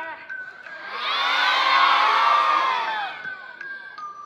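Audience cheering with many high, overlapping screaming voices. It swells about a second in, peaks, and dies away by about three seconds, over a faint sustained tone.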